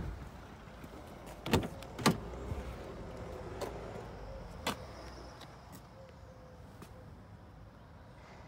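A Ford S-Max's front door is opened by hand. Two sharp clicks come from the handle and latch about a second and a half in, then a couple of fainter clicks and handling noise.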